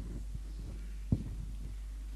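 Steady low electrical hum with a few soft low thuds and one sharper thump a little past a second in.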